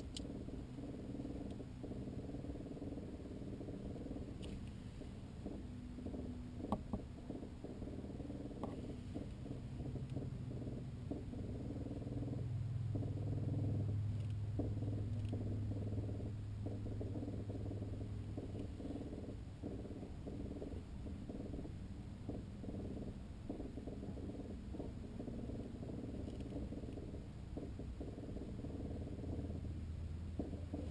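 A low, steady mechanical hum made of several tones. A deeper drone swells for several seconds around the middle, and a few faint clicks come in the first ten seconds.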